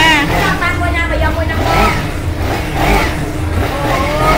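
A woman talking over a low, steady rumble that fits a motorcycle engine idling.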